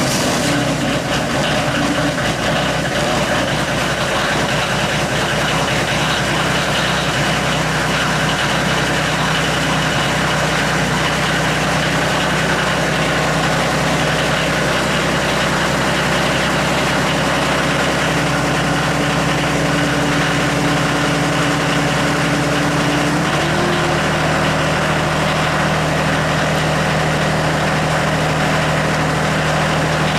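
Kioti CS2410 compact tractor's three-cylinder diesel idling steadily just after a semi-cold start, its block heater having been plugged in for about an hour. Its note changes slightly about three-quarters of the way through.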